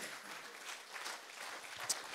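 Congregation applauding steadily.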